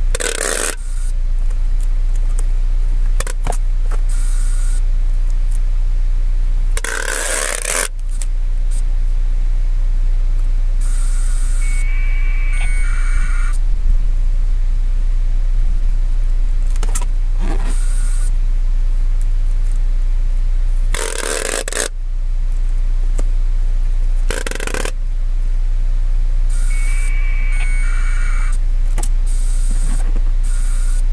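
Close handling noise, scraping and rustling, from someone working with his hands near his clip-on microphone, with a few rasping bursts about a second long, over a steady low rumble.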